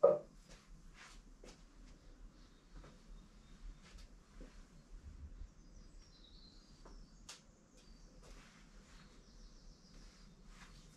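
A single sharp knock at the start, then faint scattered taps and scratches of an ink pen making short tally strokes on a long sheet of paper. Faint high chirps come through about six seconds in and again near the end.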